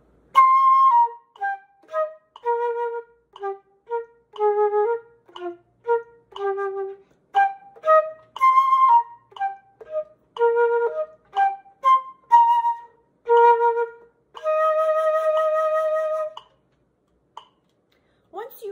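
Concert flute playing the ending of a fast etude at a slow practice tempo, eighth note at 60: a run of short, separated notes, then one long held note of about two seconds to finish.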